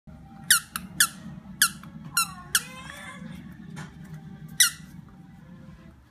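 A dog's squeaky toy squeaking about six times in short, sharp bursts as a puppy bites and tugs it. Each squeak drops in pitch, one a little before the middle draws out longer, and a low steady rumble runs underneath.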